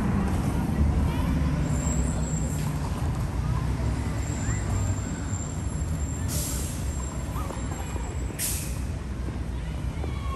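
Low rumble of a heavy vehicle running, with two short, loud hisses about six and eight and a half seconds in.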